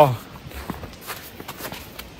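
Footsteps of a hiker's boots on fresh snow along a rocky trail, a few faint, irregular steps. The tail of a spoken "wow" is heard at the very start.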